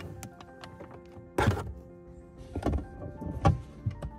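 Three sharp plastic knocks and clicks, the loudest about a second and a half in, as the plastic cover panels around the rear-view mirror base are pried loose with a plastic trim removal tool. Soft background music plays underneath.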